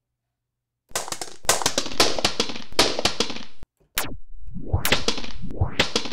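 Sampled recording of an all-aluminium Traktor Audio 10 audio interface dropped on a floor, played back pitch-shifted in a sampler: a run of metallic clatters and bounces lasting about three seconds. After a short break it plays again with its pitch swept, plunging steeply and then climbing in sweeps under the clatter.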